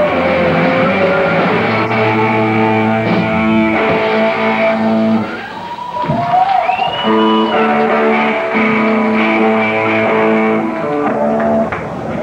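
Hardcore punk band playing live on a raw audience tape, with distorted electric guitar and bass holding long chords. The sound dips briefly a little after five seconds in, with a short high sliding tone about seven seconds in, then the held chords resume.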